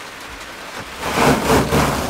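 A Hyundai Starex van's ceiling panel being pulled down off the roof by hand: a rustling, scraping swell with some low rumble that starts about a second in and peaks twice, over steady rain on the van's body.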